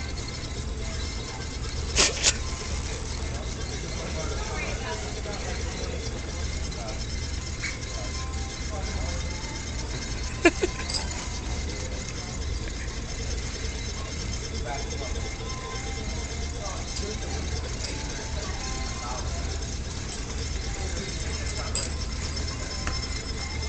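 Pet store ambience: a steady low hum with faint background voices. Two sharp clicks stand out, about two seconds in and again about ten seconds in.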